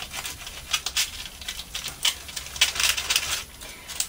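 A paper wipe rubbed firmly back and forth over glued paper scraps, a run of quick scratchy rustling strokes. It presses the scraps into the glue and wipes off the excess from the top.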